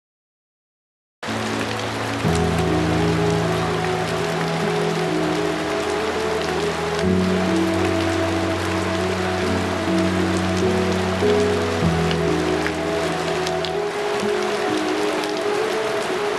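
Steady rain falling, mixed with background music of slow, sustained chords that change every few seconds. Both start suddenly about a second in, after silence.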